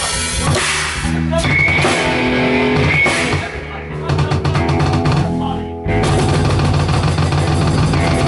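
Hardcore punk band playing live: a drum kit pounding under distorted electric guitars, with a short stop about six seconds in before the band comes back in together.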